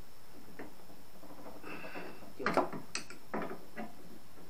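Wrench and spanner tightening a flare nut on a split air conditioner's refrigerant service valve: faint metal clinks and scraping, with one sharp click about three seconds in.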